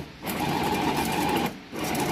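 Small electric food chopper with a glass bowl grinding pork belly and dried shrimp, its motor run in pulses: it cuts out briefly at the start and again about a second and a half in, then starts again.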